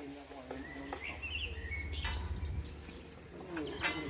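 Small birds chirping in short twittering phrases, over a low wind rumble on the microphone, with two sharp knocks, one about two seconds in and one near the end.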